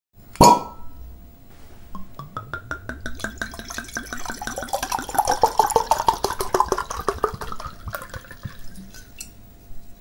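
A glass is struck once and rings. Then liquid glugs out of a bottle in a quick, even run of pulses for about six seconds, like wine being poured into a glass.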